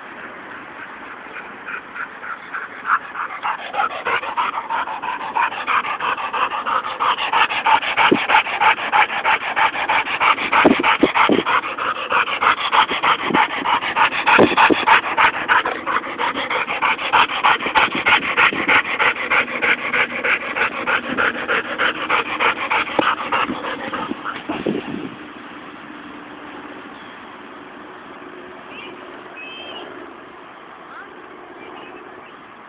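A pitbull–Dalmatian mix dog panting hard in quick, even breaths, several a second, building up over the first few seconds and stopping abruptly about 25 seconds in. The panting is that of a dog tired and cooling down after exercise.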